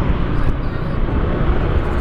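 Steady wind rush on the microphone of a Yamaha scooter rider moving at road speed, heaviest in the low end, with the scooter's engine and road noise underneath.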